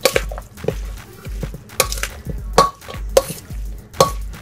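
A utensil stirring a thick, wet corn and black bean salad in a stainless steel mixing bowl, with several sharp clinks and scrapes against the metal.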